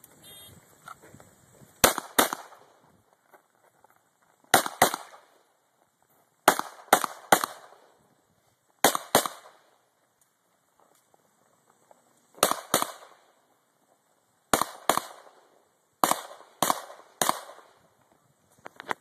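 Glock pistol firing about sixteen shots, mostly quick double-taps with a couple of three-shot strings. There are pauses of about two to three seconds between the groups.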